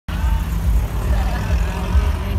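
A car driving past close by, a steady low engine and road rumble, with faint voices in the background.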